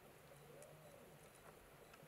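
Very faint humpback whale song heard underwater: one moaning call that rises and falls in pitch, over a steadier low hum, with scattered faint clicks.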